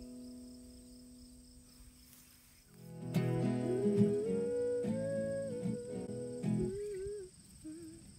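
Acoustic guitar chord dying away. About three seconds in, a final strummed chord rings under a wordless hummed melody, and both stop sharply a little before seven seconds in: the close of a folk song.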